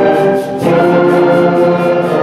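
School concert band playing held wind chords. The sound thins briefly about half a second in, then a new chord comes in.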